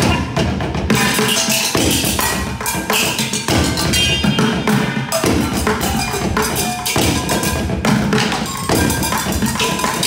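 Sticks drumming a rhythmic routine on a rack of hanging metal pots and pans, the rapid strikes ringing with short pitched metallic tones.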